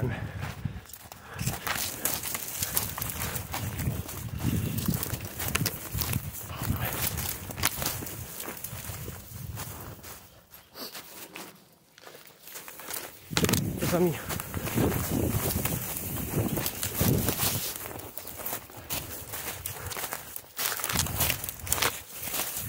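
Hurried footsteps of a person running through dry fallen leaves and twigs, crunching and rustling with each stride. The sound eases off for a couple of seconds about halfway through, then picks up again.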